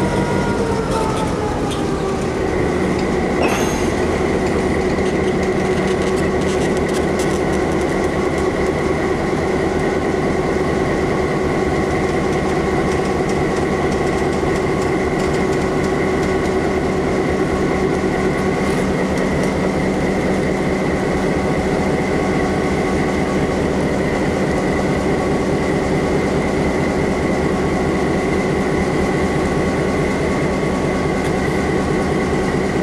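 Diesel locomotive engine running steadily under a high whine. Its pitch drops over the first couple of seconds and then holds level.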